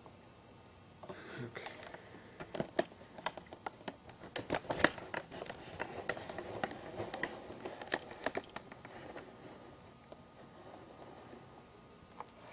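Scattered small clicks, taps and rustles in a small room, with a denser run of louder clicks about four to five seconds in.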